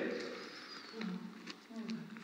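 A chocolate orange being handled in its foil wrapper: a few soft crinkles and clicks as the broken segments are moved. There are two brief, low murmurs of voice.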